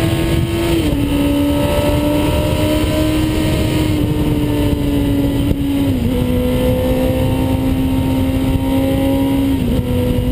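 Honda CBR1000RR SC59 inline-four with an Arrow Racing exhaust pulling at motorway speed, its note stepping down in pitch three times (about a second in, at six seconds, and near the end) as it shifts up through the gears, under heavy wind rush on the microphone.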